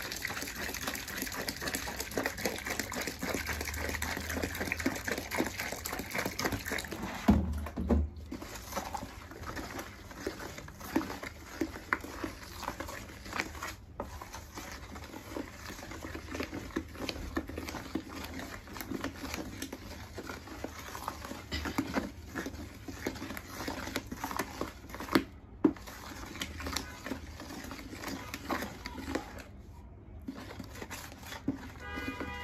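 Water pouring from a plastic jug into a plastic bucket of thick liquid-soap mixture as a wooden stick stirs it; the pouring stops after about seven seconds with a thump. The rest is the wooden stick churning and slapping the thick soap against the sides of the bucket.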